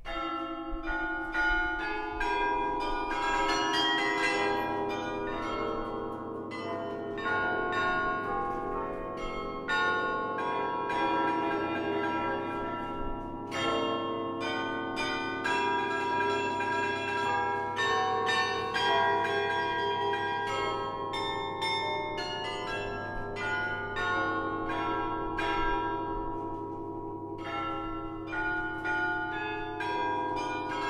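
Historic Hemony carillon, its restored bronze bells played from the baton keyboard: a slow chorale melody with accompanying notes, each bell struck and left ringing so the notes overlap. The playing begins suddenly at the very start, out of near silence.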